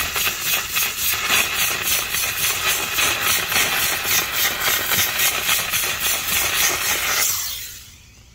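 Steam cleaner wand jetting steam on maximum into carpet, a loud hiss that pulses about four times a second and stops shortly before the end.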